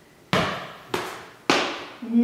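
Three thumps about half a second apart from a squat with half burpee on a Bosu ball: landings of the jumps on a tile floor, each dying away quickly.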